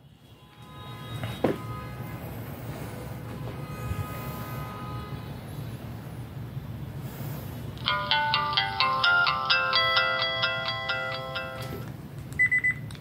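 Samsung Gusto flip phone playing its Verizon power-on tune through its small speaker as it boots. Faint held electronic tones and a single click come first, then from about eight seconds in a louder run of short electronic notes.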